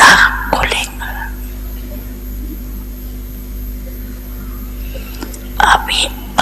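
A woman's voice speaking Hindi softly and slowly into a microphone, with a pause of about four seconds between phrases. A steady low hum runs underneath throughout the pause.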